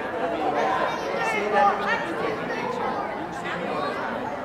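Chatter of many people talking at once in a large hall, with a voice speaking Thai over it.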